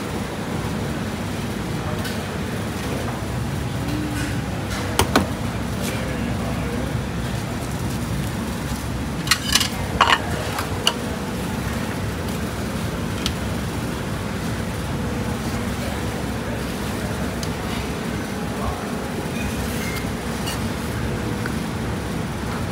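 Steady low background rumble of a busy hawker-stall kitchen, with a few short sharp clicks and knocks of kitchen work, once about five seconds in and a quick cluster about ten seconds in.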